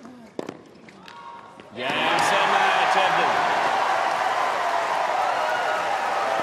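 Tennis ball struck by rackets in the final rally of a hard-court match in a hushed stadium, then about two seconds in the crowd erupts into loud cheering and applause as match point is won.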